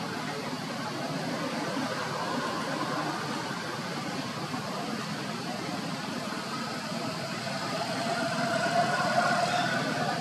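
A steady low rumble like a running engine, with a faint drawn-out higher tone joining about seven seconds in.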